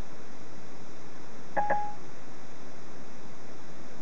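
A single short electronic beep from the Siri/Ford Sync hands-free system, under half a second long, about one and a half seconds in. It is the prompt tone that follows a spoken voice command, heard over a steady background hiss.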